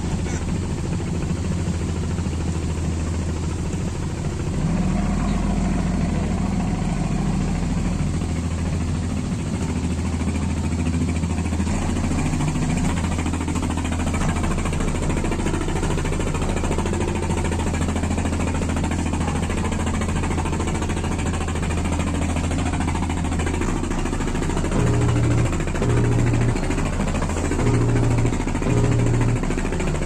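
Pilot boat's engines running steadily while it holds alongside a tanker, with a rush of wind and water over it. In the last few seconds low notes of a music beat come in on top.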